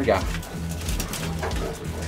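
Racing pigeons cooing in a loft while they feed, with rapid light ticks of beaks pecking grain.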